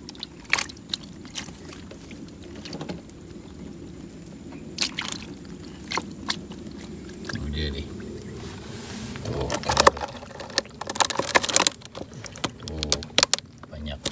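Water dripping and trickling, with scattered clicks and knocks, as a wire-mesh fish trap is handled over a wooden boat. From about ten seconds in, a quicker run of knocks and taps.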